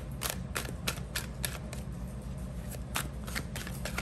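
A tarot deck being shuffled by hand, overhand, the cards slapping together in a run of short sharp clicks, a few a second, with a short pause about two seconds in. A steady low hum runs underneath.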